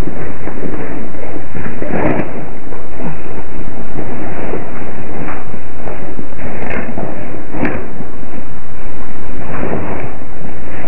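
Loud, steady hiss from a security camera's built-in microphone, broken by a few scattered knocks, the clearest about two seconds in and near the end.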